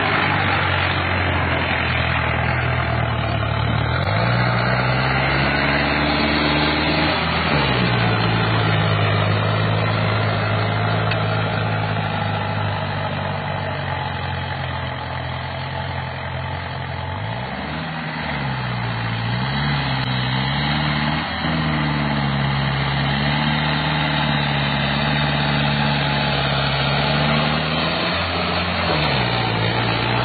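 Farmtrac 6055 Classic tractor's diesel engine working under load as it pulls a disc harrow in third high gear. The engine note rises and falls several times as the load changes, with a brief wavering dip in the middle.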